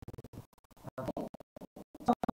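Crackling static from a faulty microphone, the sound breaking up and cutting in and out rapidly.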